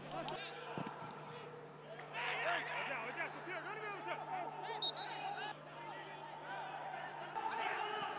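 Faint pitch-side sound of a football match with no crowd: players shouting and calling to each other, over a low steady hum that stops near the end.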